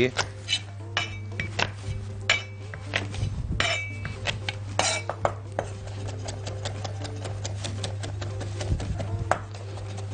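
Cleaver chopping garlic on a wooden cutting board: sharp knocks that turn into a quick, even run of about four or five strokes a second in the second half. Before that come a few scattered knocks and short ringing clinks of kitchenware.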